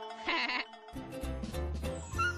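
Cartoon score with a short, wavering, bleat-like cartoon voice sound about a quarter-second in. About a second in the music changes and a bass line comes in.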